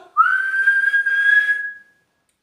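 A person whistling one long note through the lips, sliding up at the start and then held steady for about a second and a half, imitating a referee's whistle.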